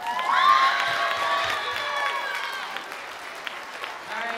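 Audience applauding, loudest about half a second in and then slowly tapering off.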